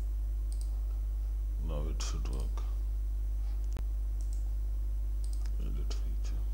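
Several computer mouse clicks over a steady low hum, with brief muttered speech about two seconds in and again near the end.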